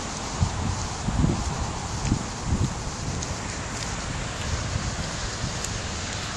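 Wind rushing over a camera in a waterproof underwater case: a steady noise with a few dull low thumps in the first three seconds.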